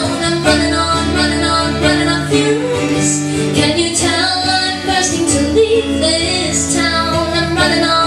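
A woman singing and strumming an acoustic guitar, with a man singing along at a second microphone, in a live two-voice song.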